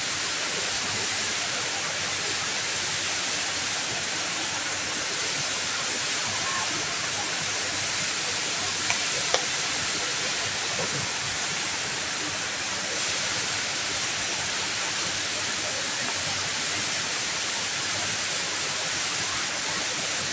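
Steady rushing hiss of the HSBC Rain Vortex, a tall indoor waterfall pouring from the roof into its pool, with a faint murmur of voices underneath. A single short click a little past nine seconds in.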